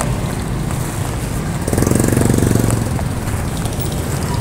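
Steady roadside traffic rumble, with a small motorcycle engine passing close and louder for about a second near the middle, its rapid firing pulses plain.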